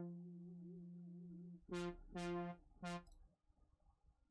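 Reason Europa software synthesizer playing a held low note whose pitch wavers with vibrato, fading out, then three short, brighter notes in quick succession.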